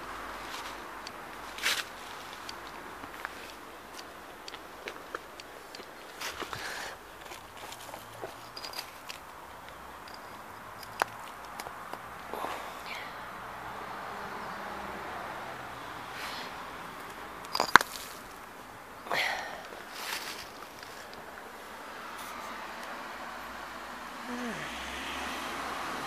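Footsteps on fallen leaves and loose stone rubble, with scattered clicks and knocks, the sharpest about two-thirds of the way through, over a steady hum of distant traffic.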